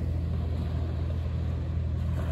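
Steady low rumble of calm sea surf at a shell beach, with small waves lapping at the shore.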